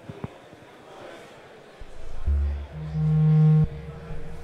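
A Buchla Music Easel synthesizer playing a three-operator FM patch (Aux Oscillator card modulating the modulation oscillator, which modulates the complex oscillator): a low, buzzy drone that comes in about two seconds in as a low pass gate is opened, its timbre shifting and brightening near the end. A few small clicks of hands on the panel come before it.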